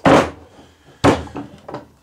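Two loud, sharp wooden knocks about a second apart, each dying away quickly, as homemade wooden clamps are worked loose from a glued-up end-grain cutting board.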